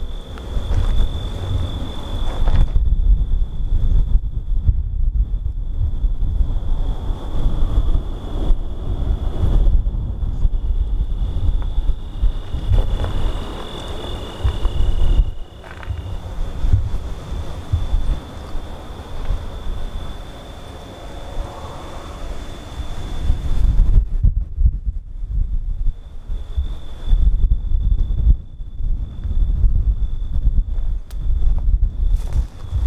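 Wind buffeting the microphone in loud, gusting rumbles, over a steady high-pitched buzz of insects in the grass; a second, slightly lower buzz stops about halfway.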